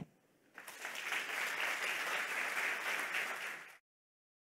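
Audience applauding, starting about half a second in and cut off abruptly near the end.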